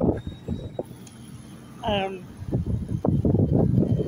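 Wind buffeting the microphone in gusts, loudest over the last second and a half, with a short hummed sound from a woman's voice about two seconds in.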